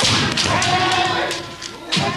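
Kendo sparring on a wooden dojo floor: a sharp impact at the start, then a long shout (kiai) held for about a second and a half, and another sharp impact near the end.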